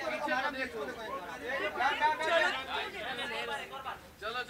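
Indistinct chatter: several voices talking over one another, with no words clear.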